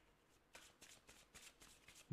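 Faint shuffling of a deck of tarot cards: a quick, irregular run of soft card flicks starting about half a second in.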